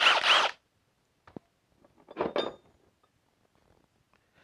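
Handling noise: two short rasping, zipper-like scrapes about two seconds apart, with a faint click between them, from gloved hands handling tools at the stump.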